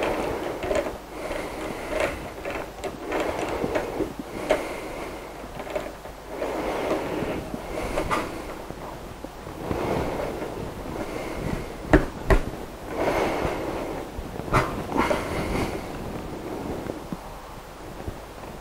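A lathe scroll chuck being tightened with a T-handled chuck key: a series of short grinding, rattling turns of the key, with a couple of sharp metal clicks about two-thirds of the way through. The jaws are expanding to grip the inside of a wooden bowl blank.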